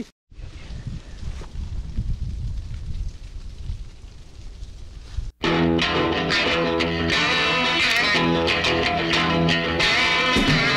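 Wind buffeting the camera microphone in gusts for about five seconds, then an abrupt cut to louder rock music with electric guitar.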